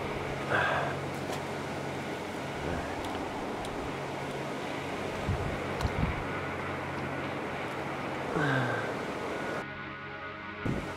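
Steady rushing of river water, with a few low thumps about five to six seconds in and a brief vocal sound near the end.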